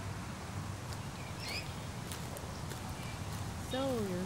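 Outdoor ambience dominated by a steady low rumble of wind on the microphone, with a short bird chirp about one and a half seconds in. A voice starts speaking at the very end.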